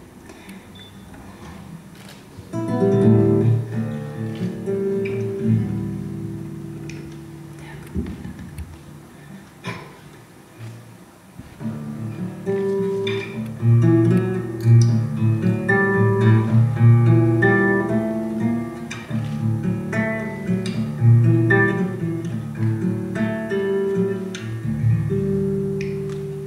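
Classical acoustic guitar playing a solo instrumental introduction: plucked notes over a bass line, starting after a quiet couple of seconds, easing off briefly near the middle, then growing fuller and more rhythmic.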